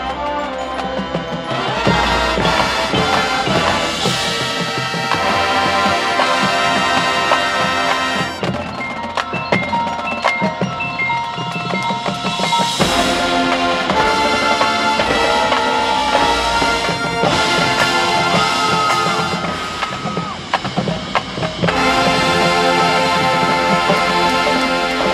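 Marching band playing its show music, winds with drums and mallet percussion. The music drops back about twenty seconds in, then comes back at full volume shortly before the end.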